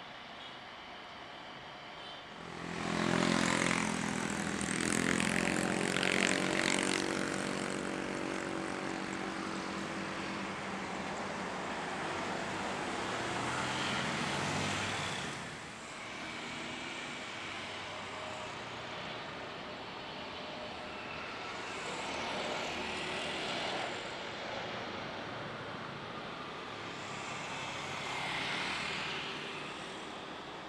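Boeing 777-300ER's GE90 jet engines rising to a loud roar a couple of seconds after touchdown, as with reverse thrust on the landing roll, holding and then easing off. After a cut, a second Boeing 777's jet engines run more quietly on approach, swelling twice near the end as it lands.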